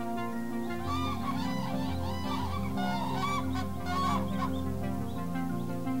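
A flock of common cranes calling, many overlapping calls from about a second in until about four and a half seconds, over steady background music.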